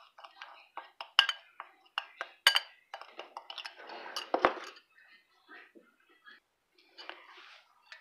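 Metal spoon clinking and scraping against a ceramic bowl while stirring a dry spice mix, in quick irregular clinks. The clinks thin out and go faint about five seconds in.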